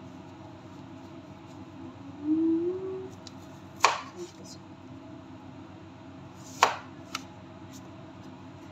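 Kitchen knife slicing through a red radish onto a plastic cutting board: two sharp knocks about three seconds apart, near the middle and late on. Earlier, a brief low hum rising slightly in pitch.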